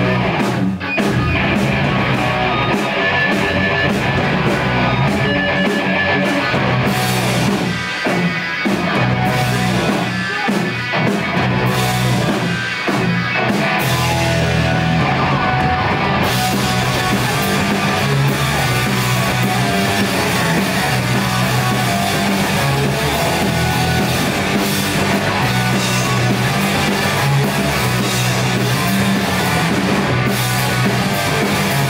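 Live punk rock band playing loudly: electric guitars and bass over a drum kit, the sound filling out with a continuous cymbal wash from about halfway through.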